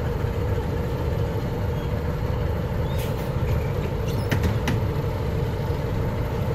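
Bus engine running steadily at low revs, heard from inside the cab as the bus moves slowly, with a few short clicks about halfway through.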